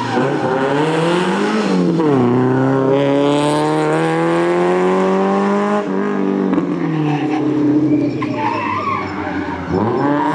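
Renault Clio Sport rally car's four-cylinder engine pulling hard through a corner. The revs climb, drop sharply about two seconds in at a gear change, then climb steadily until the driver lifts off about six seconds in. Lower revs follow, with tyres squealing as it turns near the end.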